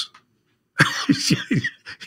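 A man laughing: a short run of breathy chuckles starting about a second in, after a brief pause.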